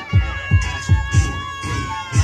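Hip hop dance music playing loud, with deep booming bass beats about three times a second and one long high note held over them.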